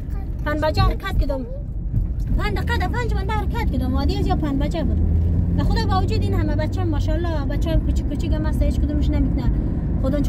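A car driving, heard from inside the cabin: a steady low road and engine rumble under a person's voice that runs almost the whole time.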